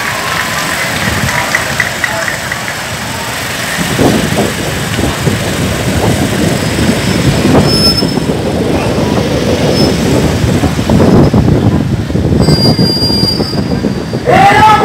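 Loud outdoor noise of a large crowd, a rough rumble with irregular knocks that grows louder about four seconds in.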